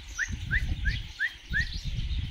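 A bird calling: five short rising chirps, about three a second, over a low, uneven rumble.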